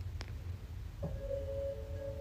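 Faint held tone, like a sustained musical note, starting about a second in and holding steady.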